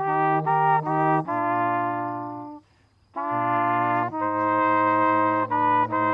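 Brass trio of two trumpets and a low upright-belled horn playing a slow piece in sustained chords. A phrase fades out about two and a half seconds in, there is a short breath pause, and then the next phrase begins.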